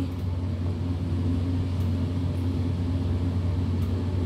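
A steady low hum with a faint steady higher drone over it, even throughout, like the continuous running of a room appliance's motor.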